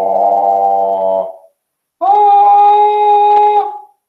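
A man singing two long held notes with no words: a low note that ends about a second in, then after a short pause a higher one held for nearly two seconds.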